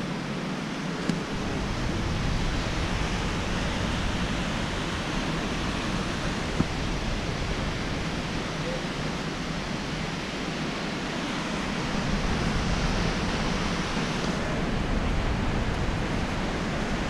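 Steady rush of creek water and falls in the canyon below the bridge, an even hiss with two small clicks.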